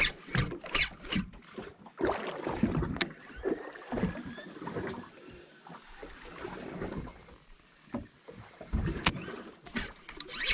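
Water slapping and sloshing against the hull of a small drifting boat at sea, in irregular surges, with a couple of sharp knocks.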